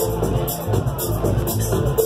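Progressive house music from a DJ set, with a steady four-on-the-floor style beat, bright hi-hat hits about twice a second over a continuous bass line.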